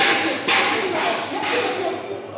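Métro train's sliding doors being pulled open by hand, with four short, loud rushes of noise about half a second apart.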